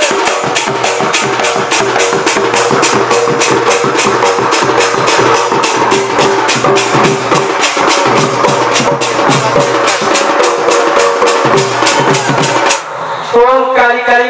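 Fast, even hand drumming on a two-headed barrel drum, with a keyboard holding sustained notes underneath. The music cuts off abruptly near the end, and a voice comes in just after.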